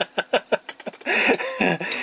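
A man laughing: a run of short, breathy laughs, then a fuller laugh about a second in.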